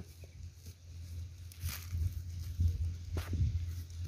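A hand brushing and scraping loose soil and dry leaf litter at the base of a young tree, with a few short scrapes, the clearest about halfway through and near the end, over a low steady hum.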